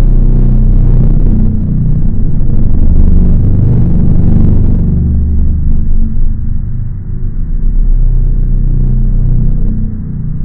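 Loud, deep rumbling drone made of steady low tones, an added sound-design effect; the hiss above it drops away about halfway through, leaving a duller rumble.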